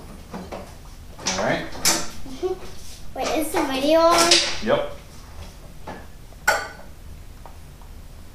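A young child talking in two short stretches, with a single sharp click about six and a half seconds in, over a low steady hum.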